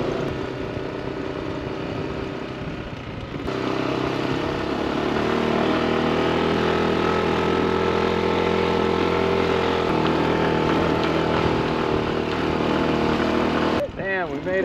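Motorbike engine working hard up a steep hill, holding a steady, strained note under full load. It is quieter at first and louder from about three and a half seconds in.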